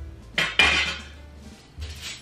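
Metal wire baskets clanking and rattling against each other as a nested stack is pulled apart, loudest about half a second in, with a smaller clatter near the end.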